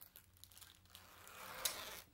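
Faint rustling and crinkling of the plastic wrap and nylon sheath as a machete is handled, growing a little louder in the second half, with a small click near the end.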